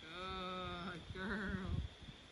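A woman's praise to a dog, a long drawn-out, high sing-song "Goooood" followed by "girl".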